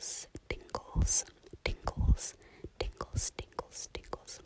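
Close-miked whispering broken up by sharp clicks and a few soft low thumps.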